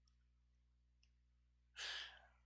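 Near silence, then a short breathy sigh near the end.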